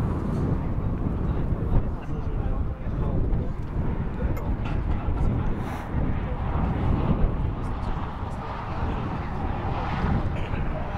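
Wind rumbling on the microphone, rising and falling, with distant voices of players calling on a football pitch.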